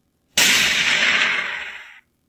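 A sudden, loud blast sound effect: a burst of noise that begins about a third of a second in and dies away over about a second and a half.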